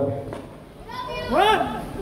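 A high-pitched voice from the audience calls out briefly about a second in, its pitch rising and falling, after a short lull between the performer's remarks.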